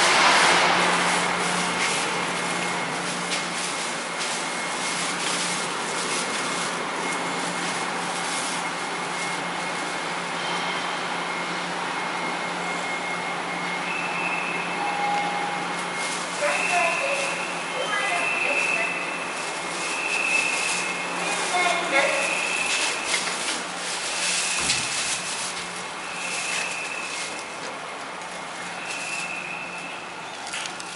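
Steady low hum and rushing noise of a ferry's machinery heard inside the ship, with a faint high steady tone over it. From about halfway, a high beep repeats every second or two.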